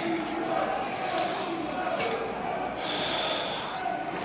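Indistinct background voices over a steady hum of room noise, with no clear words.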